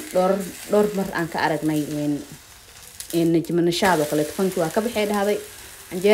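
A woman talking, with a short pause about halfway through.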